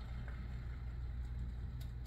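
A single battered onion ring frying in hot oil in a stainless steel saucepan: a steady, quiet sizzle over a low hum.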